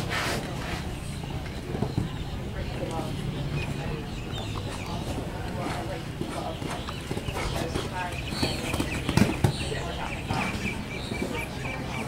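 A horse cantering and jumping on sand footing, its hoofbeats thudding, with two louder thuds about nine seconds in, over background voices.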